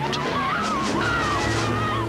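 Film trailer soundtrack: dramatic music mixed with sound effects, a wavering high tone over a steady low drone.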